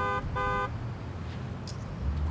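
A car horn honking twice in quick succession, two short beeps within the first second, over a steady low hum of street traffic.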